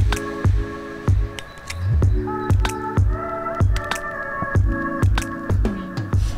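Background music with a steady beat: a kick drum about twice a second under held chords.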